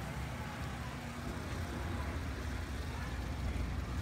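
Pickup truck's engine idling, a steady low rumble.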